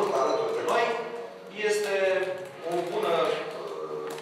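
Speech only: a man talking, with short pauses between phrases.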